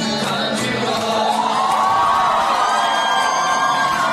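Dance music with singing, and a crowd cheering and whooping over it with some clapping.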